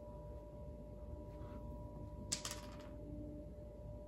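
Quiet room tone: a steady faint electrical hum with a thin high whine, and one brief soft noise about halfway through.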